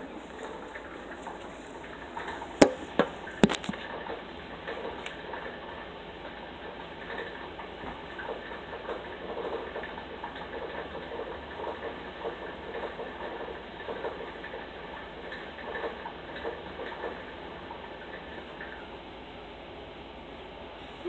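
A few sharp knocks of a phone being handled and set down, about two and a half to three and a half seconds in. Then quiet room noise with faint scattered rustles and taps.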